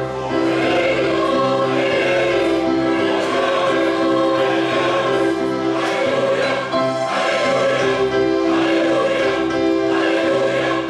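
Mixed-voice church choir singing in harmony, holding long chords that change about every second.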